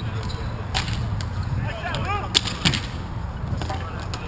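Roller hockey stick play: a few sharp clacks of sticks hitting the puck, the loudest two close together past the middle, with a player's shout between them.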